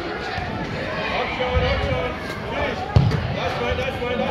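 Players and spectators shouting and calling out during an indoor soccer game, in a large echoing hall, with one sharp thud of the ball about three seconds in.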